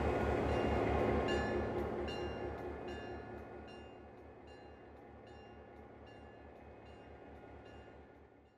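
A train running on the tracks, its rumble fading away over the first few seconds. A faint, evenly spaced ticking carries on afterwards.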